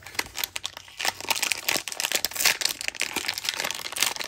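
Crinkling and tearing of a plastic trading-card hanger pack wrapper as it is handled and opened, a dense run of irregular crackles.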